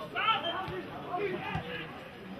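Men's voices calling out and chattering around a football pitch during play, over a small crowd's hubbub.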